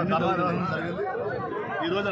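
A man speaking, with other voices chattering around him.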